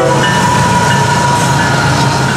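Florida East Coast GE ES44C4 diesel locomotives passing close by: a loud, steady engine drone with a steady high whine over it, just as the horn cuts off at the start.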